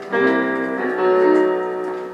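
Digital piano playing sustained chords: one struck just after the start and another about a second in, each left ringing and slowly fading.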